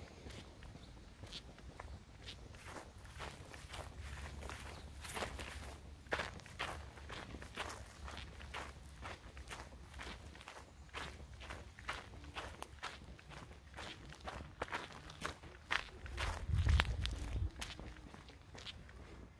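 Footsteps on an asphalt road at a steady walking pace, about two steps a second. A low rumble runs underneath and swells near the end.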